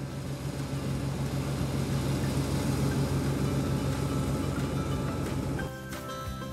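Rice combine harvester running steadily as it cuts through the paddy, a loud engine hum that cuts off suddenly near the end.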